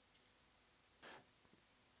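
Near silence with a few faint computer mouse clicks in the first half-second and one short soft noise about a second in.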